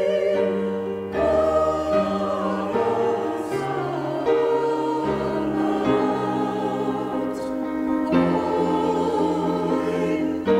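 Mixed church choir singing a slow hymn in held chords that change about once a second.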